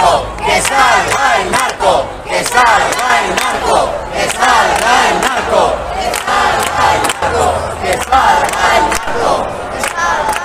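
A large crowd of protesters shouting together, loud, with many voices overlapping throughout.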